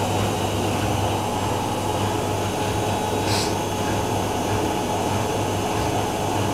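Miele W5748 front-loading washing machine spinning steadily at 1200 rpm in its final spin, a continuous hum and whir, with the Whirlpool AWM 1400 beside it getting ready for its next spin burst. A brief hiss comes about three seconds in.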